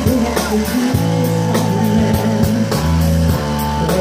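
Live rock band playing: a drum kit keeping a steady beat under amplified electric guitar.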